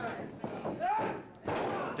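A wrestler's body thuds onto the ring canvas about one and a half seconds in, amid shouted voices.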